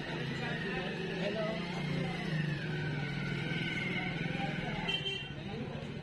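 Busy street sound in a narrow market lane: a motorcycle's engine running as it passes close by, with people's voices around it. A short high-pitched beep sounds about five seconds in.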